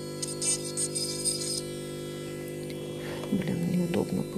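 Cordless electric manicure drill (nail e-file) running steadily at high speed with a fine cuticle bit while it trims the cuticle: a steady motor hum. A thin hiss over it stops about a second and a half in.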